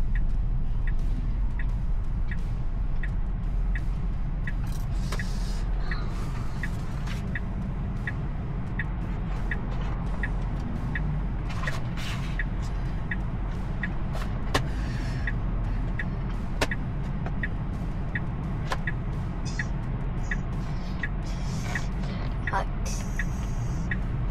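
Car turn-signal indicator ticking steadily, about two ticks a second, over the steady low rumble of road and tyre noise inside the Tesla Model Y's cabin while it waits to turn left. A couple of light knocks sound about two-thirds of the way through.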